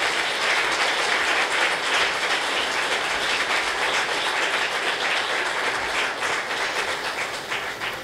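Audience applauding a storyteller at the microphone: steady, dense clapping that thins out slightly near the end.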